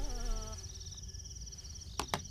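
Crickets chirping steadily in a fast, even trill, with a few held notes of music dying away about half a second in.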